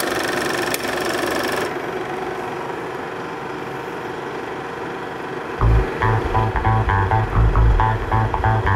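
A film projector starts up and runs with a steady mechanical whir and hum, loudest in its first second and a half. About five and a half seconds in, music with bass and plucked guitar comes in over it and becomes the loudest sound.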